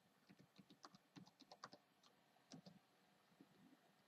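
Faint typing on a computer keyboard: a quick run of keystrokes as a password is entered, followed by a couple of separate taps about two and a half seconds in.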